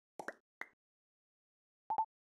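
Sound effects of an animated title card: three quick pops in the first part of the second, then a short, single-pitched electronic blip near the end.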